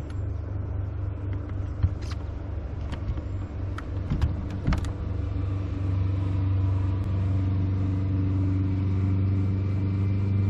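A boat's motor runs with a steady, even hum that grows louder about six seconds in, with a few light knocks early on.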